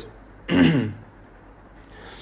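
A man clearing his throat once, briefly, about half a second in.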